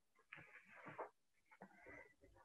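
Near silence in a pause between spoken sentences, with a few faint, brief sounds.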